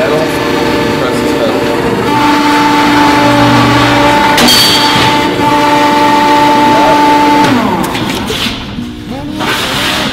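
Metal Muncher mechanical ironworker running with a steady motor and flywheel hum, a sharp crack about four and a half seconds in as the shear cuts through the metal. Near the end the motor is switched off and its hum falls away as it winds down.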